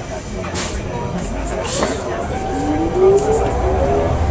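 A San Francisco Muni vehicle's motor whining upward in pitch as it gathers speed, over the steady rumble of the ride heard from inside.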